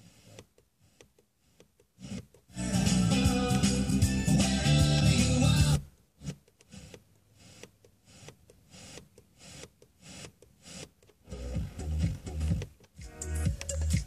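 Car FM radio being tuned across the band. A station's music comes in loud for about three seconds, then drops to faint, broken crackle between stations. Near the end another station fades in with music over a steady beat.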